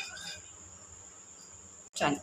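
Quiet background with a faint, steady high-pitched whine that runs unbroken. Any spoon stirring the dry flour is too faint to pick out.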